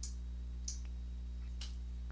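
A steady low hum with a couple of faint clicks.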